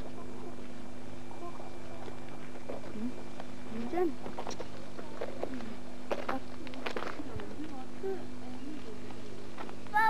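Faint distant voices and a few short calls over a steady low hum, with a few brief clicks in the middle.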